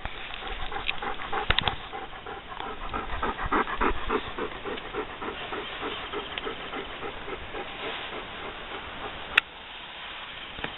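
Dog panting rapidly and rhythmically, about three breaths a second, easing off later. A single sharp click comes near the end.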